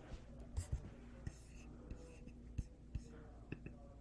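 Faint scattered clicks and taps from a computer keyboard and mouse, a few at irregular intervals, over a low steady room hum.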